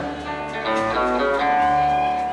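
Live country performance with no singing: an acoustic guitar picking an instrumental passage between verses over the band, with one note held near the end.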